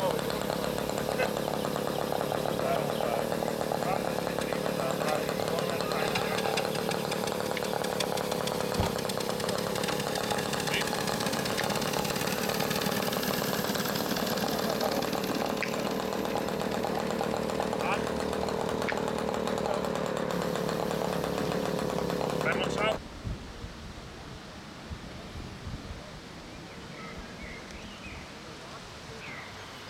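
Small combustion engine of a model tractor running steadily with a fast, buzzing note. It cuts off abruptly about 23 seconds in, leaving quieter outdoor background.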